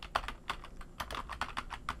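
Typing on a computer keyboard: a quick, irregular run of keystrokes entering a line of text.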